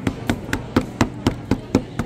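A small ink pad dabbed repeatedly onto a rubber stamp to ink it, a steady run of sharp taps about four a second.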